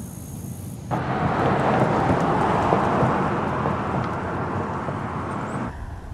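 Insects droning steadily for about the first second, then, from a sudden edit, a loud even rushing noise, like a passing vehicle or wind, that slowly fades.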